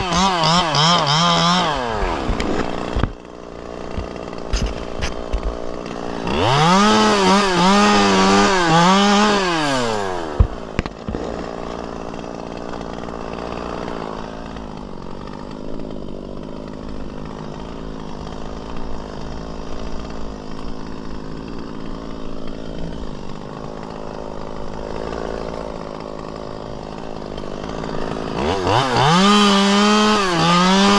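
Chainsaw cutting into palm frond bases: the engine revs high with a wavering pitch under load at the start and again from about six to ten seconds in. For most of the rest it drops back to a steady idle, then revs up again near the end.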